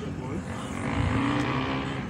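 An engine of a passing motor vehicle, growing louder to a peak about a second in and then easing off.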